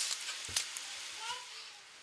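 Beef stew meat sizzling as it browns in a pan, a steady hiss, with a single knife knock on a wooden cutting board about half a second in as an onion is cut.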